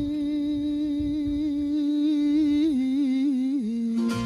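A singer holds one long note of a devotional folk song, wavering in pitch in the second half and falling to a lower note near the end.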